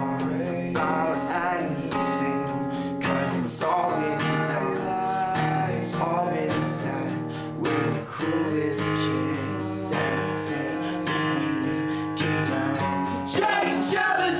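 Acoustic guitar strummed in a steady rhythm, with a man singing over parts of it.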